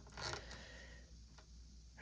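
Faint handling of a plastic action figure as its leg is bent into a kick pose: a short plastic scrape about a quarter of a second in, then a couple of faint clicks.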